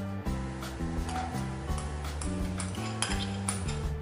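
A spoon scraping and clinking against a bowl, several sharp clicks, as all-purpose cream is scooped out into a pan of sauce, over background music.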